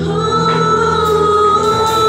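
Live church worship band music: the singers hold one long note over the band's steady accompaniment.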